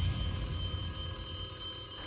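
Game-show buzzer going off after a contestant's hand slams the push button, a steady electronic ringing over a low rumble.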